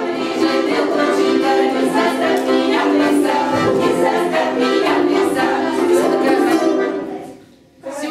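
A group of voices singing a Russian folk song together in long held notes. The song stops about seven seconds in.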